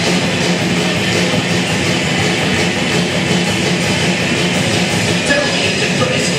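Loud, steady rock music played by a band, led by electric guitar, with no singing.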